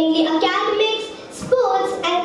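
A girl's voice reading aloud into a microphone, with a short pause about a second and a half in.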